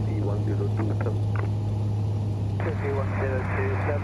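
Cessna 182's engine drone, a steady low hum, as heard through the cockpit headset intercom during the landing approach. About two and a half seconds in, a hissy radio transmission with a voice cuts in.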